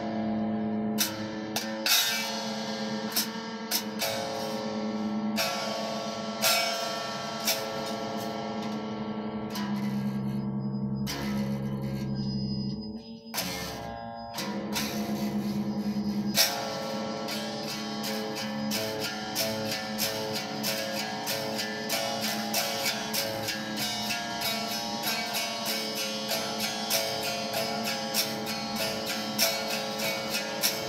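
Electric guitar picked with a coin in place of a pick. Slower picked chords and notes with short pauses come first, with a brief break about 13 seconds in. From about 16 seconds on comes fast, continuous, even picking.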